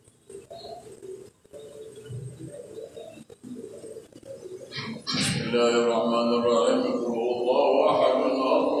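Faint, soft cooing for the first five seconds, then a man's voice starts a loud, steady chant about five seconds in.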